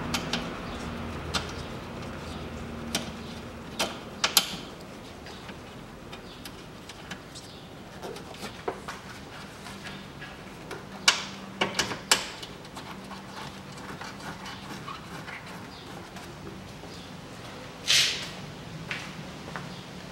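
Scattered light metallic clicks and knocks of hand work on the radiator mounting bolts under the bonnet, the upper radiator-to-body bolts being started by hand. A brief sharper scrape comes near the end, over a faint steady low hum.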